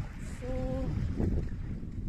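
Wind blowing on a phone's microphone: a steady low rumble.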